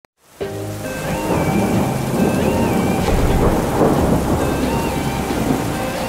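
Rain and thunder ambience, dense and steady, with a melody of long held notes running underneath; the sound starts suddenly about half a second in.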